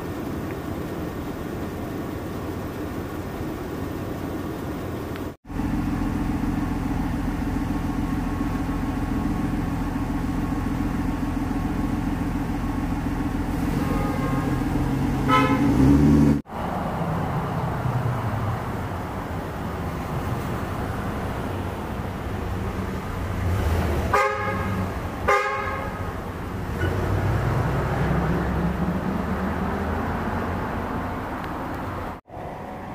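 Street traffic with a vehicle engine running steadily, and a car horn tooting several times: once around the middle and two short toots near the end. The sound cuts out abruptly twice.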